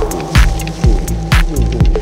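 Minimal electronica track: a steady kick drum about twice a second, a sharp hit on every other beat, and a held synth tone.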